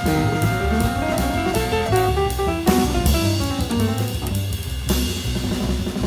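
Small-group jazz instrumental: drum kit with cymbals keeping time under a plucked bass line and a melodic line that steps up and down in pitch.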